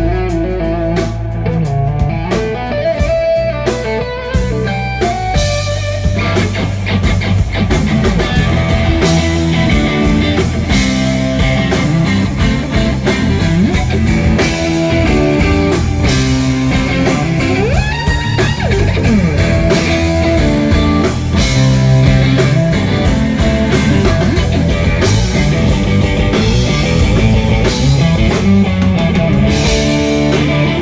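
Live instrumental rock from a three-piece band: an electric guitar plays a lead solo over bass and drums. A swooping pitch bend comes near the middle.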